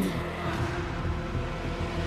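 Background music bed of sustained low notes under a steady rushing swell of noise, with no speech.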